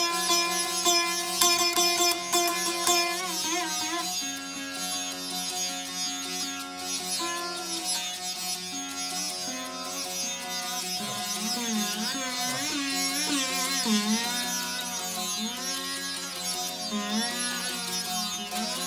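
A rudra veena being played solo: plucked notes over steadily ringing drone strings, with quick strokes in the first few seconds, then from about eleven seconds in long sweeping glides and wavering bends of pitch as the melody string is pulled along the frets.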